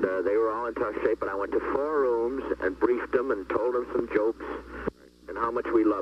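Speech only: a man talking over a telephone line in an old tape recording, with a short pause about five seconds in.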